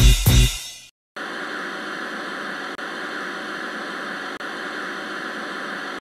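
Music ends with a couple of final hits within the first second, then after a brief silence a steady static-like hiss runs on, broken by two very short dropouts.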